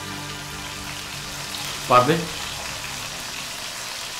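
Food frying in a pot on a gas stove, a steady sizzle as it is stirred.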